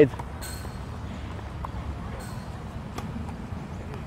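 A tennis serve: the racquet strikes the ball with a single faint crack about three seconds in, over steady outdoor background rumble.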